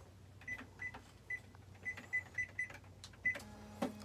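Electronic cash register keypad beeping at each key press: about eight short, high beeps at an uneven pace, with faint key clicks, as a quantity and price are keyed in.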